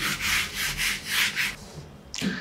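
Whiteboard eraser rubbed back and forth across a whiteboard: a run of quick rubbing strokes, several a second, that stops about a second and a half in.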